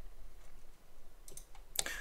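Computer mouse scroll wheel clicking as a web page is scrolled: faint scattered ticks, with louder clicks near the end.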